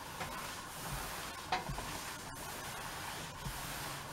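Iron sliding over a cotton handkerchief on an ironing board: a faint steady hiss of the soleplate rubbing the fabric, with a few soft knocks.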